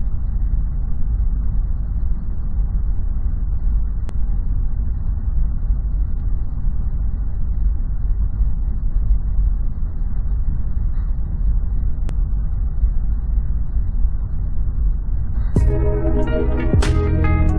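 Steady, muffled low rumble of jet aircraft cabin noise, with nothing in the high end. Plucked guitar music comes in just before the end.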